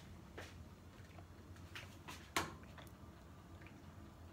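Quiet kitchen room tone with a low steady hum and a few faint clicks, the clearest about two and a half seconds in.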